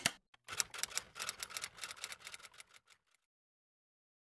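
Typewriter-style clicking sound effect from an animated intro: a rapid run of key clicks, about eight to ten a second, starting about half a second in and fading out before stopping near the three-second mark.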